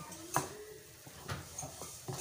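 Spatula scraping and knocking in a pan while stirring thick egg halwa that is roasting in ghee, with a sharp clack about a third of a second in and another just over a second in. The ghee has separated from the halwa, the sign that the roasting is almost done.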